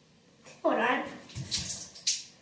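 A child's short vocal sound with a wavering pitch about half a second in, followed by hissing, bumping handling noise as the phone is moved.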